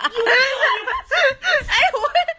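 A person laughing: a high voice that slides up and down in pitch for about the first second, then breaks into quick, short bursts of laughter.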